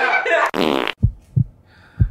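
Girls laughing, with a short loud buzzy noise about half a second in, then two soft low thumps.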